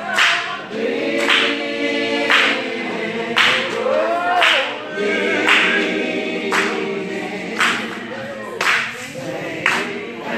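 A congregation singing together, with hand claps keeping time about once a second.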